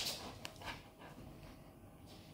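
A dog with a rope ball toy in its mouth making short noisy sounds: a louder one right at the start and two fainter ones about half a second in, then little sound.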